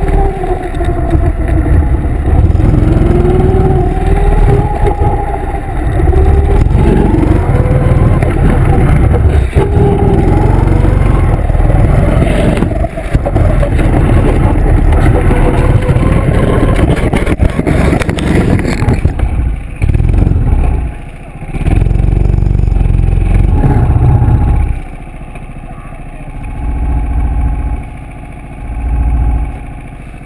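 Go-kart engine running with its pitch rising and falling as it revs, over a heavy low rumble. It drops away about 25 seconds in, with two shorter bursts near the end.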